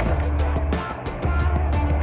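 Background music with a deep bass line and a steady beat of quick, light ticks.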